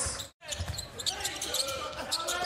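Basketball dribbled on a hardwood court: scattered low thumps in an arena, with faint voices behind. The sound drops out completely for a moment about a third of a second in, where one highlight clip cuts to the next.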